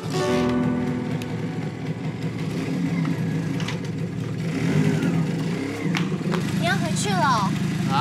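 Motorcycle engine idling steadily with a low, even hum. A short voice sounds near the end.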